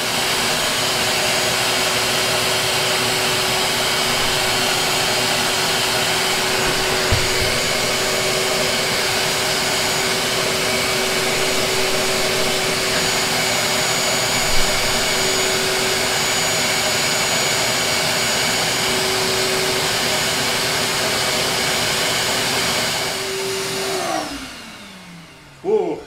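Shop-Vac wet/dry vacuum running steadily with a constant hum, stuck on. Two brief clicks come partway through. Near the end it shuts off and the motor winds down with a falling whine.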